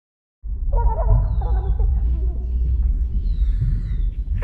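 A deep, steady rumble cuts in abruptly about half a second in. Faint voices sit above it for the first couple of seconds.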